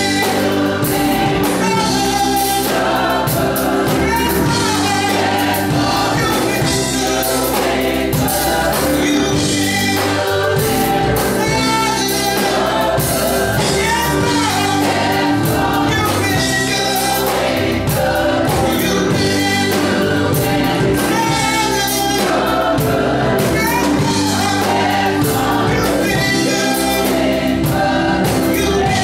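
Gospel mass choir singing, accompanied by a band with a drum kit keeping a steady beat under the voices.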